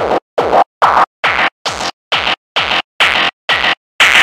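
A distorted frenchcore kick drum sample looping on its own at 150 bpm, about two and a half hits a second, each short hit with a falling pitch tail. An EQ boost is swept upward through it, so the hits go from midrange-heavy to harsh and bright; loud.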